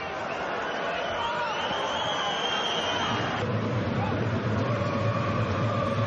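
Football stadium crowd noise: a steady, dense din of the crowd, changing abruptly about three and a half seconds in.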